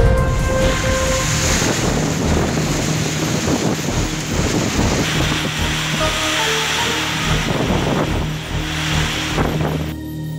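Nor'wester storm: a loud, steady rush of wind and driving rain, with background music notes underneath.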